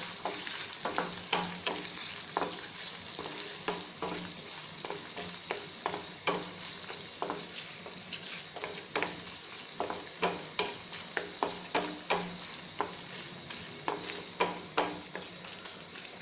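Sliced onions frying in hot oil with ginger-garlic paste in a non-stick pan, sizzling steadily. A wooden spatula stirs them, scraping and knocking against the pan in repeated short strokes.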